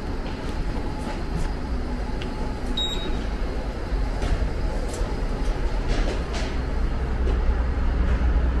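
Steady low vehicle rumble, growing somewhat stronger about halfway through, with a few faint scattered clicks and taps.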